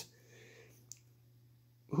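Faint rustle of a bagged comic book being handled, with one small click about a second in; otherwise near silence.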